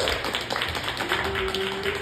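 Small audience clapping rapidly in rhythmic bursts, with a single held vocal note over the last second.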